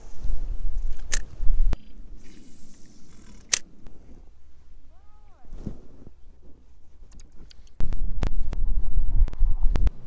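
Wind rumbling on the microphone in gusts at the start and again near the end, with a few sharp clicks of a spinning rod, reel and lure being handled in between.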